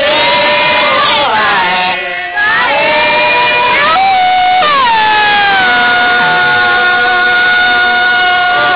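Dawan (Atoni Pah Meto) work chant sung loudly by the field workers' voices, long drawn-out notes that slide between pitches. About five seconds in the voice slides down into one long held note.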